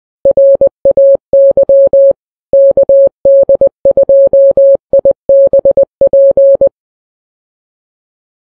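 Morse code sent as a single steady beep tone, keyed in short and long elements, spelling out "RAY KD2IBP", an amateur radio call sign. It stops about a second before the end.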